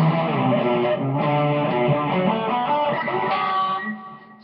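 Guitar played in a run of strummed chords and notes, which the player himself calls horrible, played while drunk.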